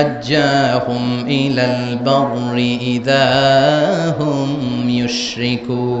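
A man's voice chanting melodically into a microphone, with long held, steady notes, in the manner of Quranic recitation.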